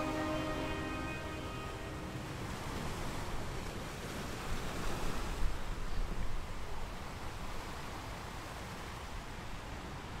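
Ocean surf washing, with a louder surge of water near the middle. The last notes of a music track fade out in the first two seconds.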